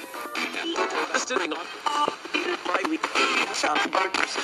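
Ghost-box radio scanning through stations, giving a choppy stream of split-second fragments of broadcast speech and music.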